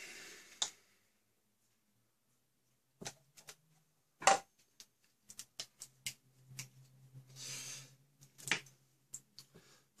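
Metal clicks and clacks of a folding multitool being handled and unfolded, its spring-assisted pliers opening. There is a sharper click about four seconds in and a quick run of small clicks a second or so later.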